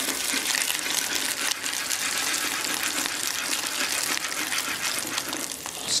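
Braised snails sautéing in hot melted butter in a pan, a steady sizzle.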